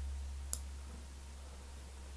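A single computer mouse click about half a second in, over a low steady hum.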